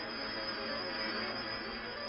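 A steady, soft drone with hiss: the film's background soundtrack, holding a few faint sustained tones.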